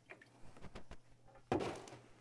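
Light handling clicks, then a single dull knock about a second and a half in.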